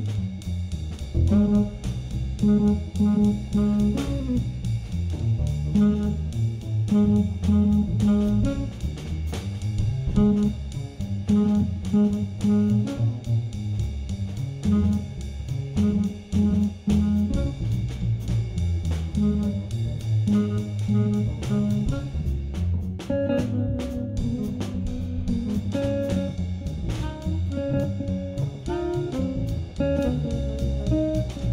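Small jazz combo playing a swing tune: hollow-body electric jazz guitar out front, with plucked upright bass walking underneath and a drum kit keeping time.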